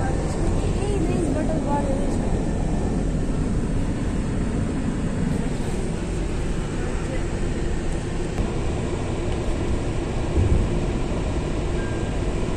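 Steady road and engine noise of a moving car, heard from inside the cabin, at an even level throughout.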